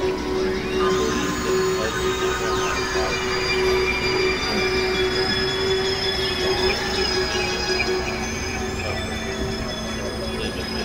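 Experimental synthesizer drone music from a Novation Supernova II and Korg microKORG XL: a steady low tone held under layers of high, squealing sustained tones, with a few gliding tones in the first three seconds.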